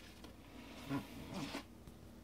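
Brief rustling and rubbing noise, about a second long and loudest about a second in: handling noise as the hand-held camera is moved.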